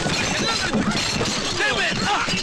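Crashing and shattering of kitchenware as men fall and scuffle on the floor, with several men shouting and crying out over the crashes.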